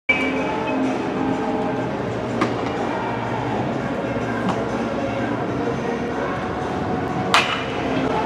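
Baseball bat striking pitched balls in batting practice: three sharp cracks about two seconds apart, the last and loudest near the end with a brief ring, over a steady background hum.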